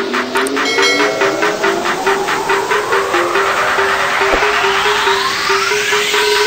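Electronic intro music: a short repeating synth figure over a fast ticking beat, with a whooshing sweep that rises steadily in pitch as a build-up.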